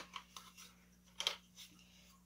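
Small screwdrivers being handled while someone searches a little screwdriver kit for a flathead: a few faint clicks and ticks, with a louder scrape a little over a second in.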